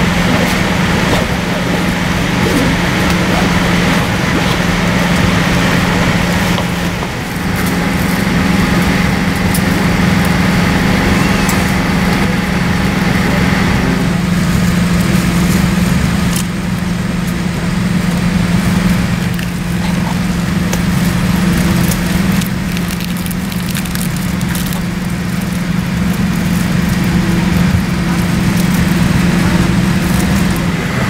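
Steady hum of a parked Boeing 787's cabin air system: a constant low drone under an even rush of air, with a few small clicks and rustles in the middle.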